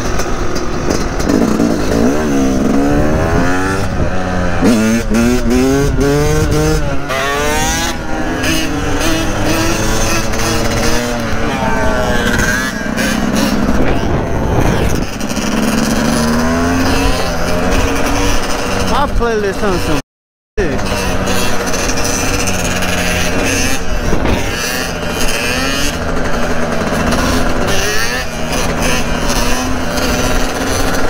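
Dirt bike engine revving up and down through the gears while riding, its pitch repeatedly rising and falling, with another motor running alongside. The sound cuts out completely for about half a second around two-thirds of the way through.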